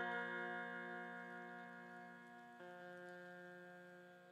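A sustained musical chord, many steady tones together, slowly fading away, with a slight change in its tones about two and a half seconds in.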